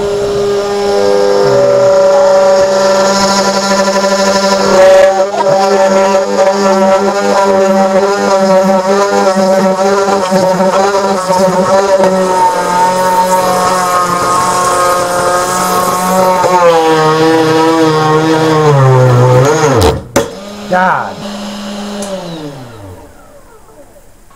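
Desktop CNC router's 300-watt spindle driving an eighth-inch single-flute end mill through aluminum: a loud, steady whine with wavering overtones. About twenty seconds in it stops abruptly, and a short falling whine follows.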